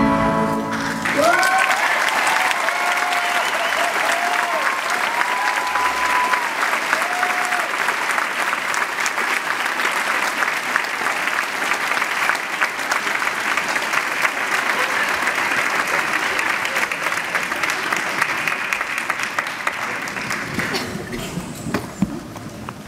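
An acoustic guitar and voice sound their last note about a second in, then an audience applauds for about twenty seconds. A few high cheers rise in the first several seconds, and the clapping fades near the end.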